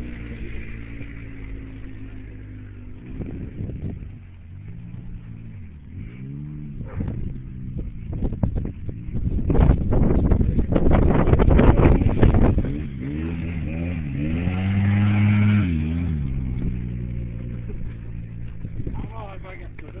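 An ATV engine revving up and down as it is ridden, its pitch rising and falling repeatedly. It is loudest and roughest for a few seconds about halfway through, with another strong rev shortly after.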